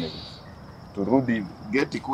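A steady, high-pitched insect trill runs unbroken underneath. Short bits of a person's voice come about a second in and again near the end.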